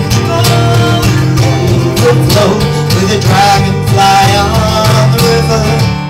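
Live acoustic folk music: two acoustic guitars strummed in a steady rhythm, with singing over them.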